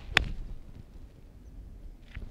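A nine-iron striking a golf ball off fairway turf from an uphill lie: one sharp click of impact about a fifth of a second in, a clean strike rather than a chunked one.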